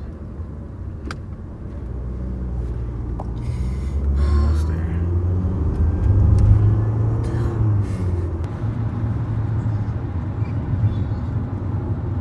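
Low road and engine rumble inside a moving car's cabin, swelling about a third of the way in and staying fuller after that, with short bursts of a woman's heavy breathing over it.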